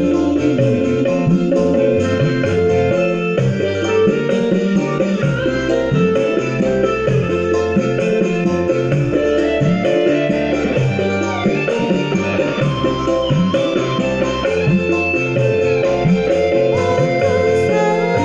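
Instrumental interlude of a Javanese pop backing track: a guitar-led melody over bass and a steady drum rhythm, with no singing.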